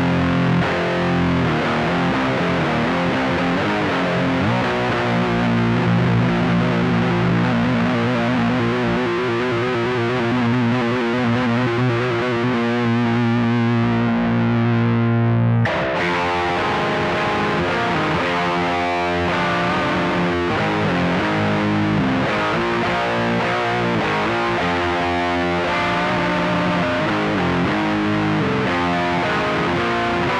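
Distorted electric guitar tuned to C standard, playing a heavy riff. A sustained, wavering note rings through the first half and cuts off sharply about halfway. After that comes choppier riffing of shorter repeated notes.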